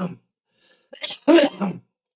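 A man coughing in two short bouts about a second apart.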